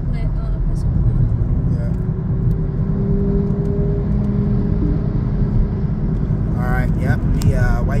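Steady low rumble of road and engine noise inside a moving car's cabin at highway speed, with a voice starting to talk near the end.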